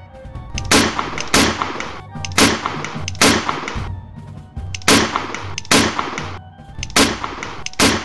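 Musket gunfire: about eight sharp shots, mostly in pairs, each a crack with a short ringing tail. Background music plays underneath.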